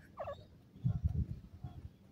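Young grey francolins calling: one short call with a gliding pitch near the start, then a few fainter short calls. Low rumbling thuds on the microphone about a second in are the loudest sound.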